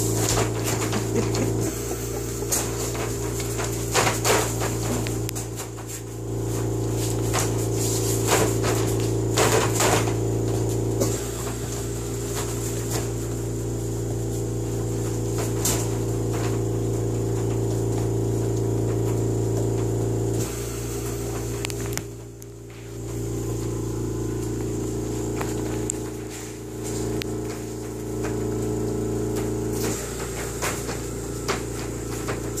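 A steady low mechanical hum made of several tones, changing its tone a few times, with a few sharp knocks and rattles in the first ten seconds, such as puppies bumping a wire pen.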